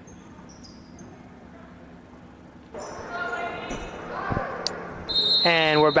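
Basketball gym ambience: faint voices in a large hall with a ball bounce about four seconds in. A short high, steady whistle-like tone follows about five seconds in, and a commentator's voice comes in near the end.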